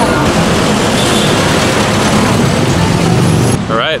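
Loud, steady city street traffic noise: vehicle engines and tyres passing on the road. A man's voice starts near the end.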